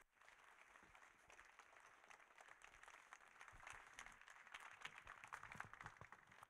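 Faint audience applause, a dense patter of many hands that swells a little in the second half.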